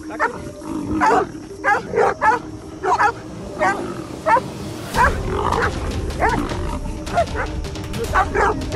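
Big cat and dogs fighting: a run of short animal cries that bend in pitch, about one or two a second, over background music. Partway through, a deeper, denser layer of fight noise comes in.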